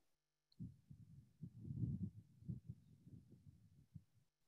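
Low, uneven rumbling noise with irregular swells, coming in suddenly about half a second in after dead silence, as an open microphone picks up something.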